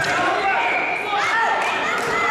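Several people shouting at once in a large hall: coaches and spectators calling out during a wrestling bout.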